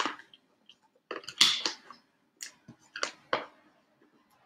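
Fingers rubbing and pressing sticky vinyl transfer tape onto a clear plastic box lid: scattered clicks and taps on the plastic, and a scratchy crinkling rustle of the tape about a second and a half in.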